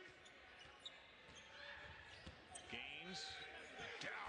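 A basketball being dribbled on a hardwood court, a few scattered bounces, heard quietly over low arena crowd noise with faint voices.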